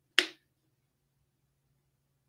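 A single short, sharp click about a fifth of a second in, then only a faint steady low hum.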